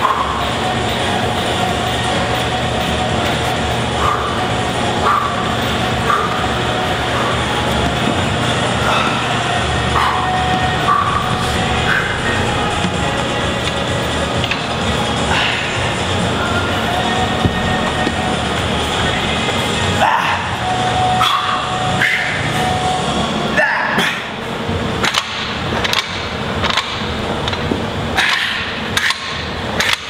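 Background music with a steady low drone fills most of the stretch. In the last several seconds it thins and gives way to a run of sharp metallic clanks from plate-loaded Olympic barbells being worked on the floor.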